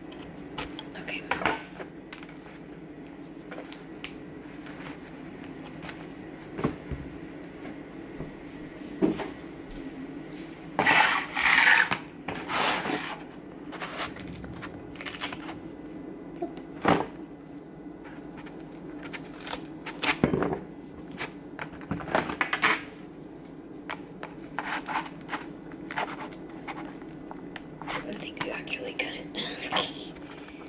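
Preparing a whole pomegranate on a plastic cutting board: scattered knocks, clicks and scrapes of a knife, the fruit and hands against the board, with a louder burst of rustling scrapes about eleven seconds in. A steady low hum runs underneath.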